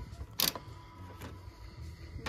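Handling noise from a plastic toy being picked up and turned over on a store shelf: one sharp knock about half a second in and a few lighter ticks, over faint steady background hum.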